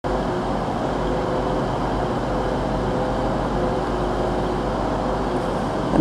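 Steady low rumble and hum of idling diesel trains on a station platform, with a few faint held tones over it.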